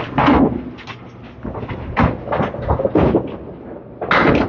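Candlepin bowling alley clatter: a string of sharp knocks and thuds from balls and pins on the lanes, the loudest just at the start and others about once or twice a second after.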